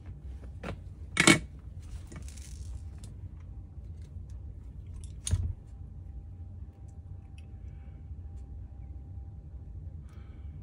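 A few sharp metallic clicks and knocks of hand tools on a workbench: a soldering iron and slip-joint pliers holding a wire. The loudest is about a second in, with a couple more about five seconds in, over a faint steady hum.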